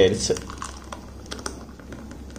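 Thick, frothy blended juice poured from a steel mixer jar into a glass: faint, irregular soft splats and clicks.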